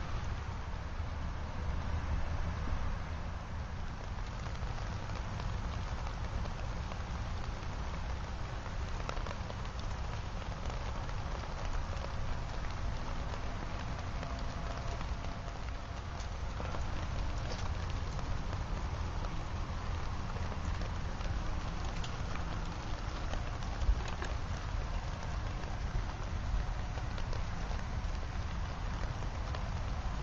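Steady rain falling around a small wood-pellet can stove, an even patter with a few faint ticks and one sharper click near the end.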